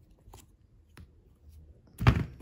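Faint handling sounds of a silicone mould being peeled off a bar of glycerin soap, with two soft clicks, one shortly after the start and one about a second in.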